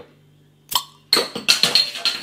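A bottle opener prising the metal crown cap off a bottle of bottle-conditioned golden ale. There is a sharp click, then about a second of noisy hiss and clinking as the cap lifts and the carbonation gas escapes.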